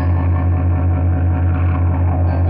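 A loud, steady low drone with a stack of overtones held on one pitch, a sustained note in a lo-fi experimental music track, with a slight fast wobble in loudness.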